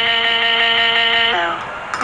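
A voice holding one long, flat 'uhhh' at an unwavering pitch, ending with a short drop about a second and a half in.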